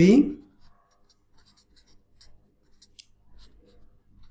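Marker pen writing on paper: faint, short scratches and taps as a line of an equation is written out, after a man's voice trails off at the start.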